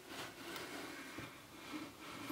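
Faint handling sounds of a wooden jig box being lifted up off assembled wooden hive frames, wood rubbing on wood, with a light tap about a second in.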